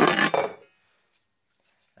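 Stainless-steel espresso portafilter clattering and clinking as it is picked up and handled, a short burst of metal knocks in the first half second.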